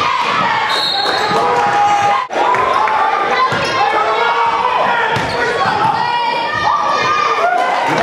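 Live basketball game sound in a large gym: a ball being dribbled on the court with voices from players and crowd over it. The sound breaks off for an instant about two seconds in.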